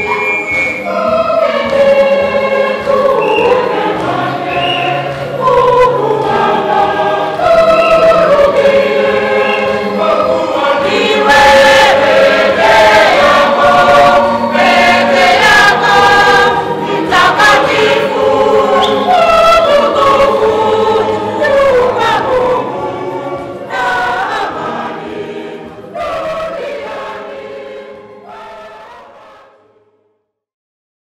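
A church congregation singing a hymn together, many voices in chorus, fading out over the last few seconds.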